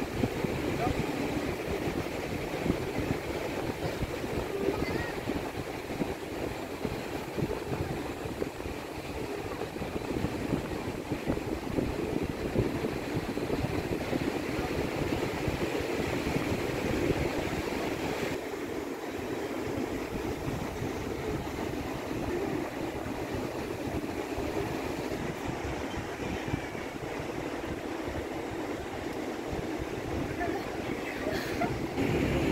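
Wind buffeting the microphone at height, over a steady rush of surf breaking on the rocks below. Indistinct voices mix in.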